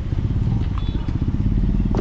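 A vehicle engine running close by, a steady low rumble.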